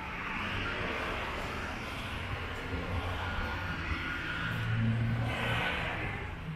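City street traffic: cars driving past, with tyre and engine noise that swells and fades as each one goes by, loudest near the end.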